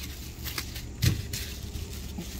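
Bubble wrap being handled, giving a few faint crinkles, over a low steady rumble.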